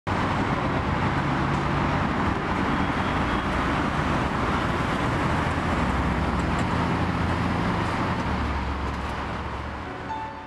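Car engine running with road and traffic noise, steady with a low hum, fading out over the last two seconds.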